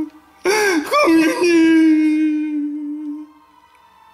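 A person's voice crying: two short, breathy, wavering sobs, then a long drawn-out wail that fades away about three seconds in.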